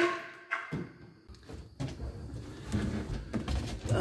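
Wooden stringer jigs and tools being handled inside a fiberglass boat hull: a sharp wooden knock at the start and another about half a second in, then low, uneven handling noise with small clicks.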